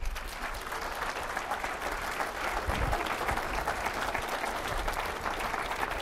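Audience applauding steadily, many people clapping.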